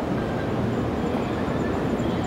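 Steady low rumble of city street noise, with no single event standing out.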